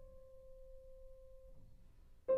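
Faint tail of a single held piano note dying away and cut off about three-quarters of the way through, leaving near silence.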